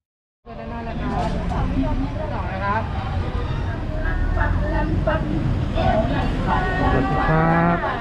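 People talking over a steady low rumble of road traffic, starting abruptly about half a second in.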